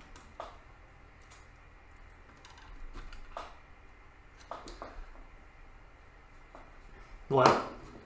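Faint, scattered small clicks and taps of a wire being loosened from one screw terminal and landed on another on a PLC analog input module's terminal block.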